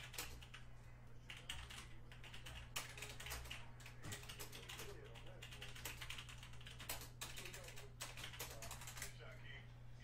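Typing on a computer keyboard: irregular runs of quick key clicks with short pauses between them, over a steady low electrical hum.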